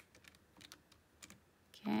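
Keys of a Casio fx-82ZA PLUS scientific calculator being pressed in quick succession: a run of quiet, irregular clicks as a number and operators are typed in.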